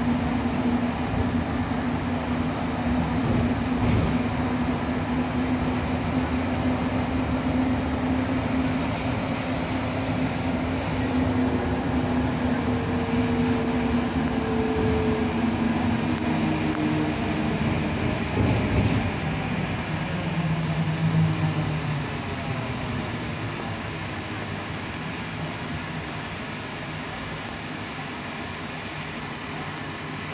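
Interior running noise of a Škoda 27Tr Solaris trolleybus heard at its articulated joint: a steady hum from the electric drive over rolling noise, with a few knocks. The hum's tones shift in pitch past the middle, and the whole sound becomes quieter about two-thirds of the way through.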